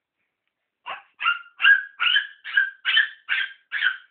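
A dog barking in a quick, even series: about eight sharp barks, two to three a second, starting about a second in.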